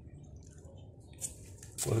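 Quiet background with a brief, soft noise about a second in; a man's voice starts just before the end.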